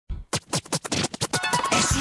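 A quickening run of turntable record scratches opening the theme song, with the full music coming in near the end.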